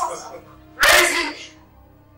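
A person's single short, sharp, breathy vocal outburst about a second in, over quiet background music.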